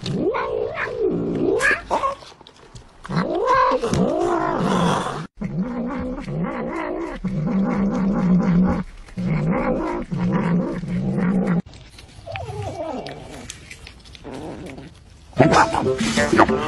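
Domestic cats meowing and yowling, the calls rising and falling in pitch. The sound cuts off abruptly twice and picks up again with different calls.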